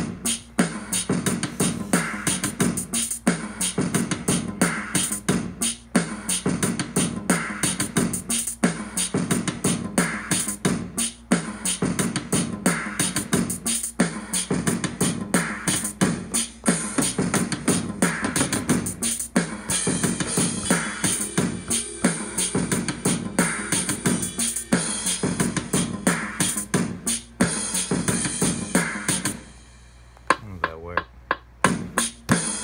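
Hip-hop beat played on an Akai MPC Live from its stock drum kits and instruments: a steady drum-machine rhythm over a low bass line. It stops just before the end.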